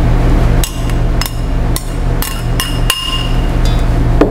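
Metal spoon clinking and scraping against a stainless steel mixing bowl while tossing pasta salad: repeated ringing knocks, about two a second, over a steady low hum.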